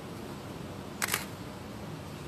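Steady room hum, broken about a second in by one brief, sharp double click.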